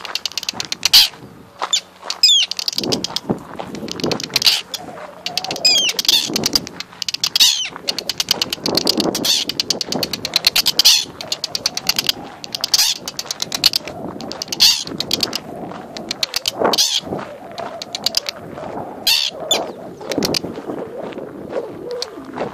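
Arctic terns giving harsh, rapid chattering alarm calls overhead, broken several times by drawn-out screeches, as they dive-bomb an intruder at their nesting colony.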